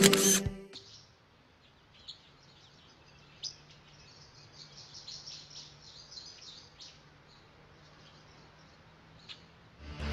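Background music cuts off within the first second. After that there is only a faint, quiet ambience with scattered high bird chirps and a few soft clicks.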